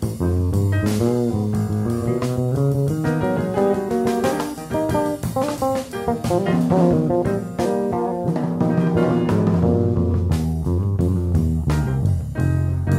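Six-string electric bass playing a running, melodic jazz solo line of quick single notes, with drums behind it.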